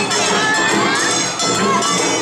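Awa odori festival street parade: children shouting and cheering over the crowd, with the troupe's band music and ringing bells. Rising and falling pitched calls cut through, with a steady din throughout.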